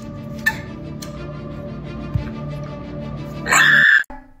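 Background music from a TikTok clip, with a woman's short, loud, high-pitched little scream near the end that cuts off suddenly.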